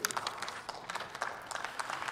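Scattered applause from the parliamentary benches: a dense, irregular patter of hand claps.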